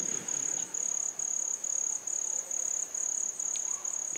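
Crickets chirping in a steady, high-pitched pulsing trill, several pulses a second.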